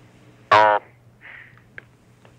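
A taped telephone interview in a pause: one short voiced syllable, a hesitation sound, about half a second in, over a steady low hum and hiss on the line, then a faint breath and a small click near the end.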